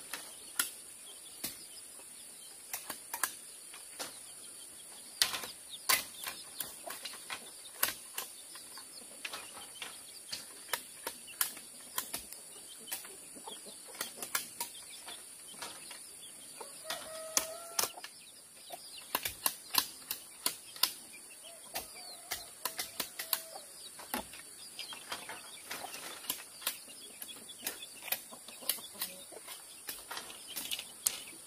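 Large knives chopping and splitting bamboo strips: irregular sharp knocks and cracks, sometimes in quick runs. A hen clucks briefly about 17 seconds in and again around 22 seconds.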